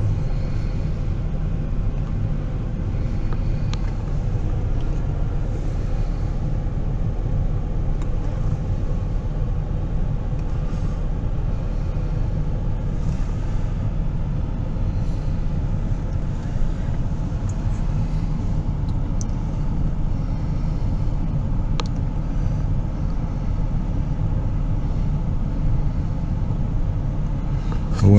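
Steady low rumble of an SUV's engine running, heard from inside the cabin.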